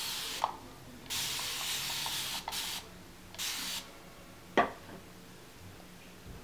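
A mist spray bottle (360 Mist Sprayer) hissing out water onto a section of hair to wet it for detangling: a burst ending about half a second in, a long burst of over a second, a short one, and another short one near the four-second mark. A single sharp click follows about four and a half seconds in.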